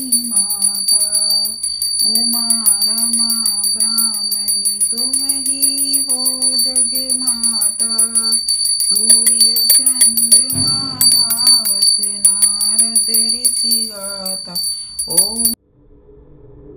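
A devotional aarti sung in a slow, held melody while a puja hand bell is rung rapidly and continuously, its high ringing over the singing. Both stop abruptly shortly before the end.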